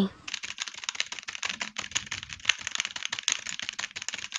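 Computer keyboard typing sound effect: a rapid, uneven run of key clicks, laid under a typed-out title card.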